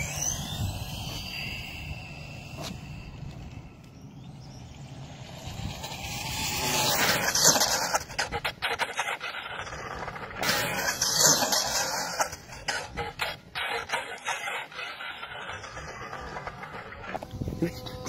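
HoBao EPX electric RC car's motor whining as the car launches on a speed run, rising steeply in pitch over the first two seconds. The whine swells again around seven seconds and eleven seconds, and scattered clicks and knocks follow in the second half.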